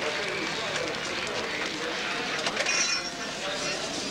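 Indistinct voices of people talking nearby over a steady background hubbub; no words stand out.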